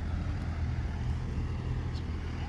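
Steady low rumble of an idling truck engine, with no change in pitch or level.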